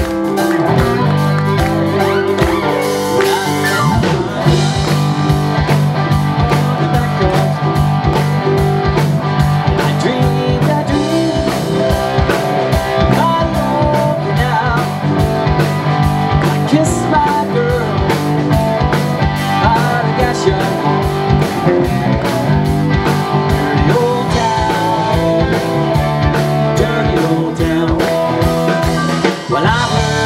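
Live Celtic rock band playing, with electric guitar, bass, fiddle, keyboard and drums over a steady beat.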